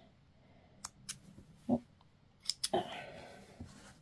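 A few faint clicks of small yarn snips being handled over a crochet piece, two close together about a second in and two more past the middle, with a soft "oh" and "ah" in between.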